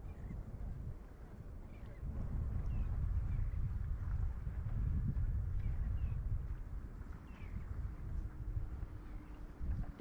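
Wind buffeting the microphone outdoors on open water, a fluctuating low rumble that strengthens about two seconds in, with a few faint short chirps above it.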